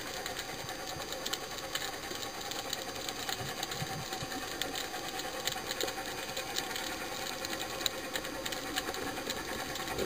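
Underwater ambience picked up by a camera in its housing: a steady hiss thick with irregular small clicks, over a faint steady hum.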